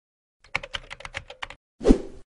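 Logo intro sound effect: a quick run of about ten keyboard-typing clicks, then a short swelling whoosh that ends in a deep thump, the loudest part, near the end.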